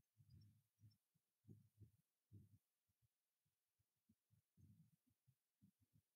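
Near silence: room tone with faint, irregular low thumps.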